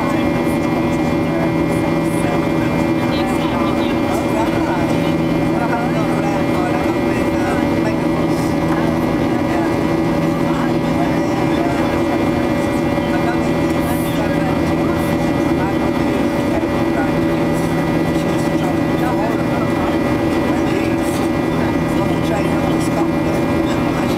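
Steady in-cabin noise of a Boeing 737-800 in flight: the drone of its CFM56-7B turbofan engines and the airflow, with several steady tones held throughout, heard from a window seat beside the wing.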